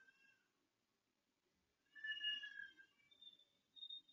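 A faint animal cry about two seconds in, lasting under a second, followed by two brief high notes near the end, against near silence.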